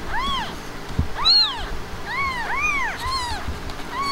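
Newborn Himalayan kittens mewing: about five short, high-pitched cries, each rising and falling in pitch.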